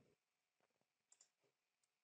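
Near silence: room tone, with a couple of very faint clicks about a second in.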